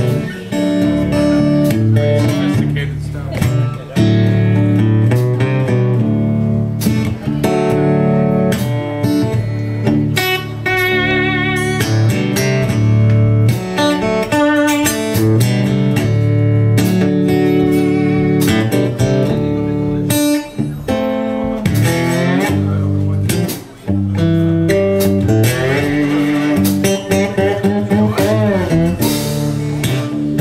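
Live blues band playing an instrumental intro: slide guitar leads with wavering, sliding notes over keyboards and drums.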